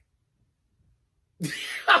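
Near silence for about a second and a half, then a man's short throaty vocal burst that runs straight into his speech.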